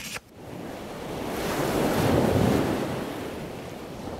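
Surf: a single ocean wave rushing in, swelling to its loudest about two seconds in and then washing out.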